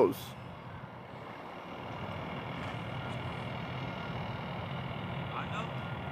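Steady low background rumble with a faint hum, growing slightly louder after the first second.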